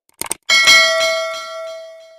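A couple of quick clicks, then a bell chime struck once that rings on and fades away over about two seconds: the sound effect of an animated subscribe button and notification bell.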